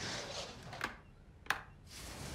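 Quiet room tone with two short clicks, the sharper one about a second and a half in.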